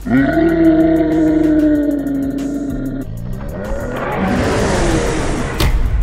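Monster roar sound effect: a deep, steady pitched roar held for about three seconds, then a rougher, noisier roar that swells into a rushing sweep, ending with a sharp hit just before the end.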